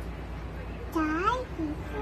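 A toddler's short high-pitched vocal sound about a second in, its pitch dipping and then rising like a meow, with a fainter one just after.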